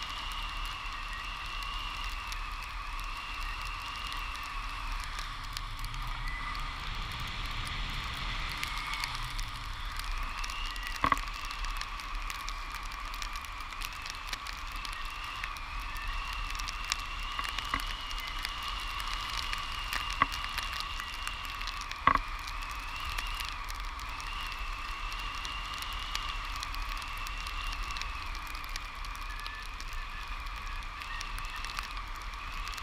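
Steady airflow noise in paraglider flight, with a constant whistling tone and a higher whistle that slowly wavers in pitch, and two sharp knocks, one about eleven seconds in and one about twenty-two seconds in.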